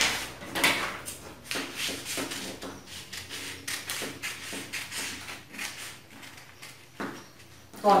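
Scissors cutting through pattern paper in a run of short, irregular snips as the cut is opened along a drawn line on the paper pattern.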